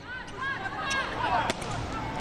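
Volleyball being played in an arena: one sharp smack of the ball about a second and a half in, over general crowd and court noise.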